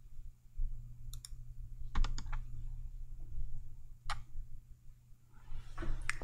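A few light clicks from computer keys or buttons: two quick ones about a second in, a short cluster around two seconds, and a single one about four seconds in, over a steady low hum.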